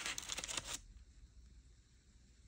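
A utensil cutting into a cake topped with torched meringue, a short crisp crackling and rustling that stops just under a second in.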